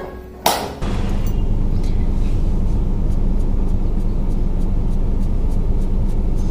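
Steady low rumble of a car's engine and road noise heard inside the cabin, with a faint hum, starting abruptly about a second in.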